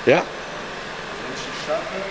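Volkswagen Golf 6 1.4 TSI turbo petrol engine idling steadily, running very quiet for a TSI. The engine has just been rebuilt with a new timing chain and makes no chain noise.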